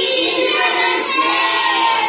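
A group of children's voices, with a woman's, calling out together in unison, loud and drawn out, breaking off near the end.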